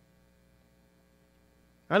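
Faint, steady electrical mains hum, a stack of even unchanging tones, with a man's voice starting near the end.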